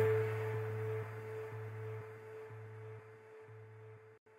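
Candyfloss, a granular pad/pulse virtual instrument for Kontakt, holding a pulse patch. A low note and a higher note are sustained and slowly fade out, with a soft pulse about twice a second and a glistening high shimmer that dies away.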